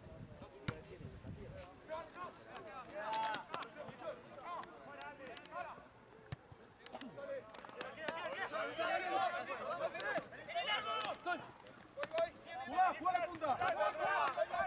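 Rugby players and onlookers shouting and calling across an open pitch, several voices overlapping and none clear enough to make out. The voices grow louder and busier from about eight seconds in and again near the end, with a few sharp knocks scattered through.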